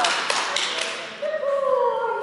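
A few quick hand claps, then a dog's long whine or howl that slides slowly down in pitch, starting just past halfway.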